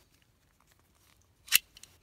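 A CZ 27 pistol's steel magazine being pulled out of the grip: one short metallic click about one and a half seconds in, followed by a couple of faint ticks.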